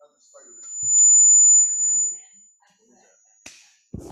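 A single piercing high-pitched whistle from the video call's audio: acoustic feedback that swells up, holds for about two seconds and fades away. A sharp click follows near the end.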